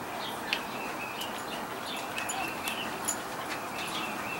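Birds chirping outside, with many short high calls scattered throughout over a steady background hiss.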